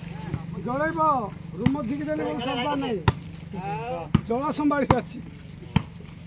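A volleyball being struck by hand during a rally, about five sharp slaps, with players' drawn-out shouts and calls between the hits.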